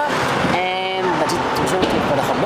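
A man's voice talking, with one drawn-out held sound, over steady street traffic noise.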